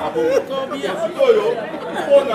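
Speech only: several people talking over one another in a gathered group.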